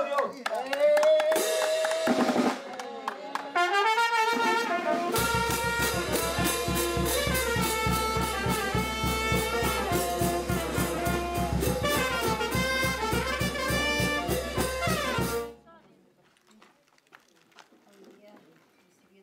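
A brass band of trumpets and low brass with a bass drum and cymbal plays a lively tune over a steady, fast drum beat. It comes in fully a few seconds in and cuts off abruptly near the end.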